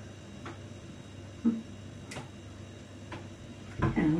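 A spoon clicking lightly against a bowl a few times as food is dished out, with a brief hum of a voice in the middle and a dull knock near the end.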